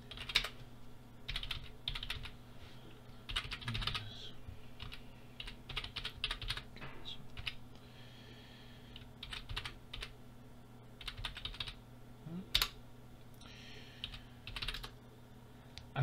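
Computer keyboard being typed on in short bursts of keystrokes with pauses between them, over a low steady hum.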